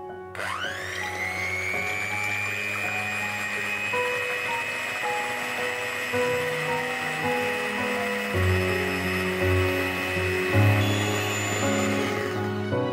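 Electric hand mixer switched on, its motor whine rising quickly to a steady pitch and holding as the beaters whip cream and melted chocolate toward stiff peaks. Background music plays under it.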